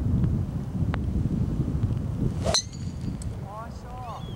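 A driver hitting a golf ball off the tee about two and a half seconds in: one sharp metallic click with a brief ring. It sits over wind rumbling on the microphone.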